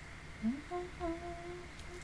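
A woman humming softly with her lips closed: a quick upward slide into a held note, a short break, then a second held note of about the same pitch.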